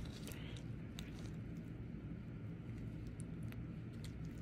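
Quiet background: a steady low hum with a few faint, short clicks.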